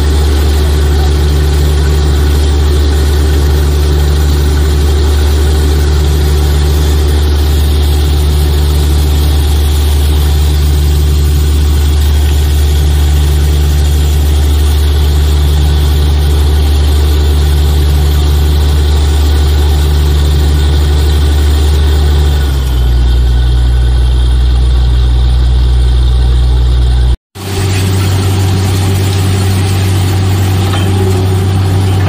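Truck-mounted borewell drilling rig running under load with a loud, steady heavy drone while it drills. About three-quarters of the way in the drone shifts lower in pitch. After a brief break it resumes at a higher pitch.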